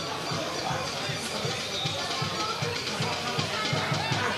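Football stadium crowd sound from the stands: supporters' drum beating a quick steady rhythm, about three to four beats a second, under faint chanting and crowd noise.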